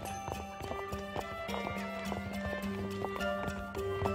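Background film score with sustained notes over a low held tone, laced with quick, irregular percussive clicks.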